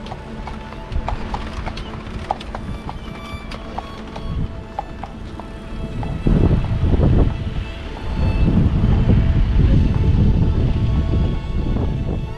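Hooves of a carriage horse clip-clopping on the paved road as a horse-drawn carriage passes, over background music. About halfway through, a louder low rushing noise takes over and lasts almost to the end.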